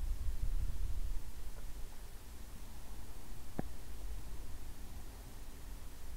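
Slow, quiet ujjayi breathing close to the microphone, a soft low rush that swells and fades with the breath. A faint click comes about three and a half seconds in.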